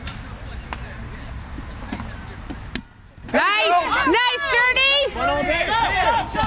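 Several players shouting and cheering in loud, high-pitched voices, starting suddenly about halfway through. Before that there is only low outdoor noise with a few faint clicks.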